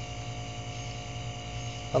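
Steady electrical mains hum with a faint buzz and no other distinct sound.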